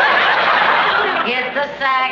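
Studio audience laughing loudly in a long, sustained wave.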